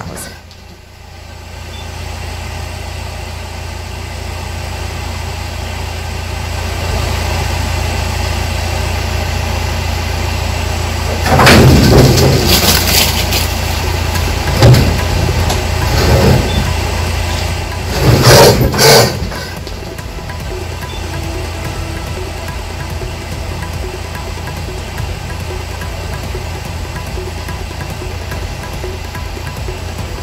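Vehicle engine idling steadily, with two loud spells of noise about twelve and eighteen seconds in and a sharp click between them.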